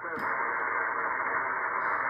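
Heavy power line noise from an Elecraft K3 receiver on the 20 m band: a steady hiss that comes in suddenly as the NR-1 noise blanker is switched off and buries the stations on the frequency. The beam antenna is pointed at the noisy power pole.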